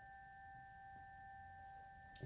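Hand-forged tingsha cymbal still ringing faintly, deep into its long sustain: a steady pure note with two weaker higher overtones, fading slowly.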